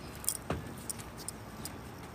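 A few light clicks and a metallic jingle, with a soft thump about half a second in.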